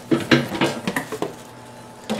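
Black stoneware crock of a Crock-Pot slow cooker knocking and clattering against its stainless steel housing as it is handled and set in, a few short knocks in the first second or so.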